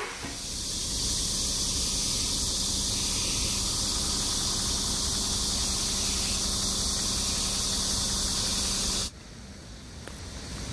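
A chorus of cicadas buzzing, a high, even drone that holds steady and then cuts off suddenly near the end.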